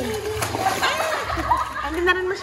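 Pool water splashing as a child plunges down into it and ducks under, with children's voices and calls over the splashing.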